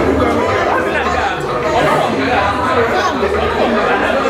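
Crowd chatter: many people talking at once in a large hall.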